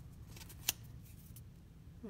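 Light handling noise: one sharp click about two-thirds of a second in and a fainter tick a little later, over a quiet, steady low room hum.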